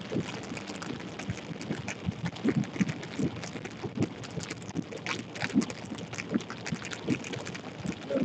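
Light rain pattering on a vehicle: scattered, irregular taps of drops over a low running noise.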